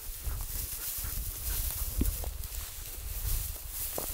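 Footsteps swishing and crunching through tall dry grass, with wind rumbling on the microphone.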